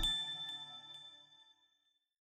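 The closing chime of an intro music sting: a bright bell-like ding struck once at the start, ringing out with a few steady high tones and fading to silence about a second and a half in.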